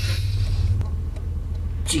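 Steady low rumble of a car's running engine heard from inside the cabin, with a short hiss near the start.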